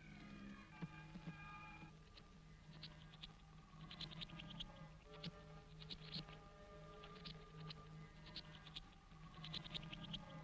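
Faint electronic soundtrack: held, organ-like tones that shift pitch every second or two. From about two seconds in, clusters of quick high chirps and clicks join them.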